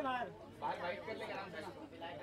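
Faint, indistinct chatter of voices talking off-microphone, quieter than the amplified host.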